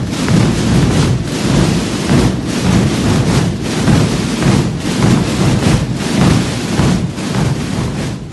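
Thousands of snare drums and bass drums (tambores and bombos) played together as one dense, continuous rumble. It has a regular surge and dip a little slower than once a second.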